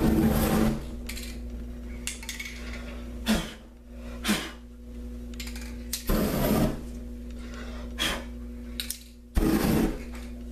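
Paint and solvent fumes on a canvas igniting in loud rushing whooshes of flame: one at the start, one about six seconds in and one near the end, with shorter, softer bursts between. A steady low hum runs underneath.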